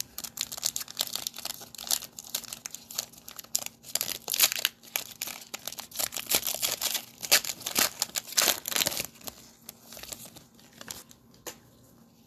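Foil wrapper of a Panini Mosaic NBA trading card pack being torn open and crinkled in gloved hands: dense runs of crackles that thin out near the end.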